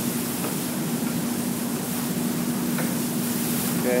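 Steady hiss with a constant low hum from background machinery running in the room.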